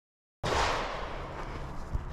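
Dead silence, then under half a second in a recording cuts in with steady background noise on the camera microphone, loudest right at the cut. There is a single sharp click near the end.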